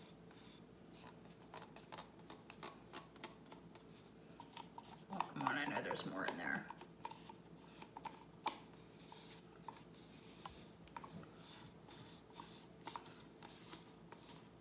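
Light clicks and taps of plastic paint cups and stir sticks being handled while acrylic paint is layered into the cups, scattered through the whole stretch. About five seconds in comes a brief voice lasting a second or two, with no words made out.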